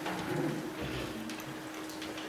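Quiet room tone with a steady low hum and faint scattered rustles and clicks.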